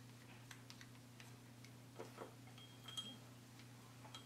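Faint small clicks and scrapes of a metal measuring spoon being scraped clean with a wooden stir stick over a small glass, with a brief light ting about three seconds in. A low steady hum runs underneath.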